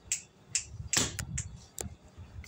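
Footsteps on a hard floor: a run of sharp steps about two a second, the loudest about a second in.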